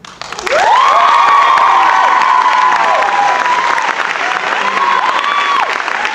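Audience applauding and cheering. The clapping starts right as the song ends and swells about half a second in, with long high-pitched whoops and screams rising over it.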